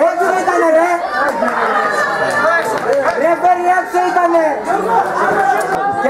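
Several men's voices talking over one another close to the microphone: spectators chattering at a football match.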